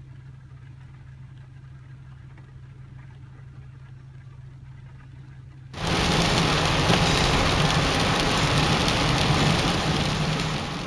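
Rain ticking lightly on a parked car's windshield over a steady low hum inside the cabin. About six seconds in it cuts suddenly to the loud hiss of tyres on a wet road and rain while the car drives, with a low rumble underneath.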